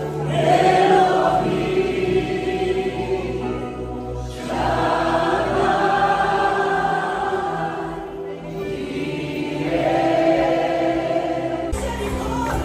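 Live church worship music: a worship team of several singers, backed by keyboard and electric guitars, sings long held phrases that swell and ease off in waves.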